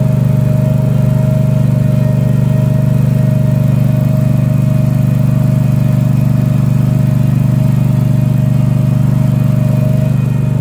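Engine of a stand-on turf machine with a spiked roller attachment running steadily at a constant speed. It is loud and even, with a thin steady whine above the low hum.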